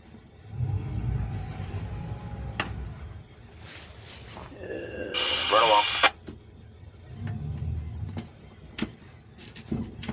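A boat's squeaky steering helm groaning in two stretches as the wheel is turned. About five seconds in there is a sharp, wavering squeal, and a few clicks are scattered through.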